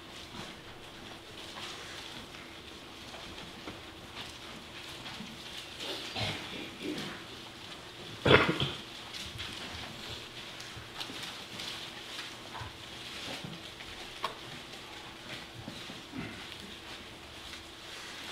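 Quiet hall with a steady faint hum and small scattered rustles as Bibles are turned to a passage. About eight seconds in comes one loud, short sound: a nose being blown into a tissue.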